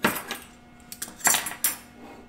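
Metal kitchen utensils clinking against a pan and a plate as metal tongs are set down and a fork is picked up: a handful of sharp clinks, the loudest about a second and a quarter in.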